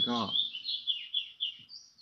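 A small bird chirping: a quick run of short, high repeated notes, about five a second, then one higher note near the end.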